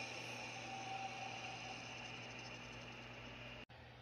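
The faint, fading tail of a movie trailer's soundtrack played from a TV, mostly hiss over a low steady hum. It dies away and cuts off abruptly shortly before the end, leaving near silence.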